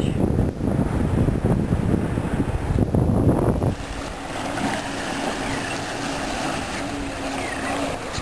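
Wind buffeting the microphone for the first few seconds, dropping off suddenly a little before halfway. After that, a boat motor's steady low hum carries on.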